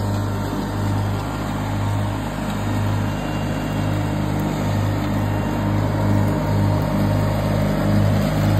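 John Deere 316 garden tractor engine running steadily under load while its mower deck cuts tall grass: an even, continuous drone.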